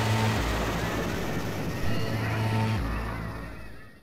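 Dramatic background-score sound effect: a loud whooshing noise swell over a low, sustained drone, fading away near the end.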